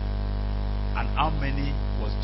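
Steady electrical mains hum, a low buzz with many overtones, with a faint voice briefly about a second in.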